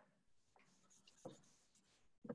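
Near silence, with a few faint, short scratches of a pen drawing on paper.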